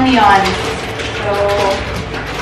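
Short bursts of a person's voice, one in the first half-second and another past the middle, over a steady background hiss.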